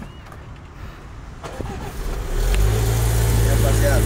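An SUV's engine starting about two seconds in, then running at a steady idle.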